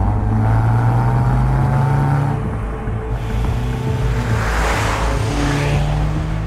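Car engine accelerating, its note rising slowly over the first couple of seconds. A rush of wind and road noise swells about four to five seconds in.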